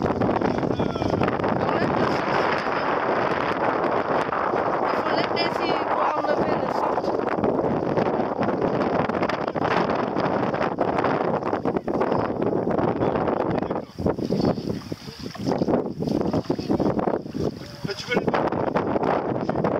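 Wind buffeting the camera microphone, a steady, loud rushing noise that turns gusty and uneven in the last few seconds.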